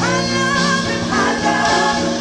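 Live gospel worship music: a group of singers on microphones singing together over a live band.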